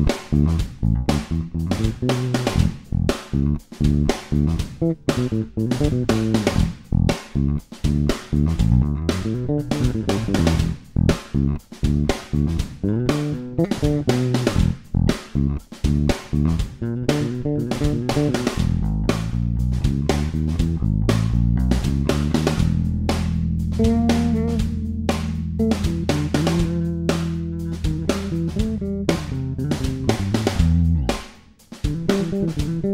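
Electric bass played fingerstyle: a quick run of short, percussive plucked notes, then, from about two-thirds in, longer held notes with sliding pitch and higher notes ringing over a sustained low note.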